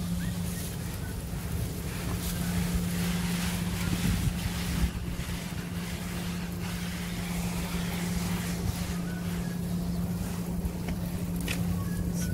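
Wind rushing and buffeting on a phone's microphone, with a steady low hum underneath.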